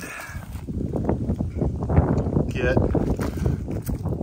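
Wind buffeting the microphone: an uneven low rushing rumble for about two and a half seconds, then a single spoken word.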